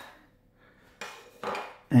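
Two light knocks as hands take hold of a plastic projector case, about a second in and again half a second later.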